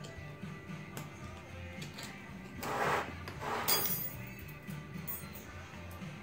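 Background music under light metallic clicks and clinks of snap-ring pliers on steel transfer-case parts as a snap ring is worked off the input shaft, busiest about three to four seconds in.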